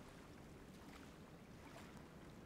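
Near silence: faint, even outdoor ambience with a low rumble.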